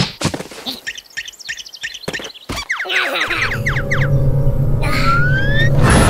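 Cartoon score with comic sound effects: a few sharp clicks and short, springy pitched blips in the first half, then a low steady drone under the music, with a rising slide near the end.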